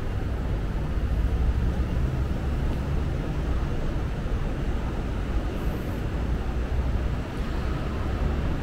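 Steady low rumble of city-street background noise, with no distinct sounds standing out.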